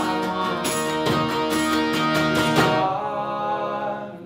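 Acoustic guitars strumming chords over a Hohner piano accordion's sustained chords; a little under three seconds in the strumming stops and the accordion's held notes carry on alone, fading.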